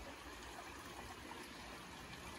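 Faint, steady sound of moving pool water trickling, with no distinct events.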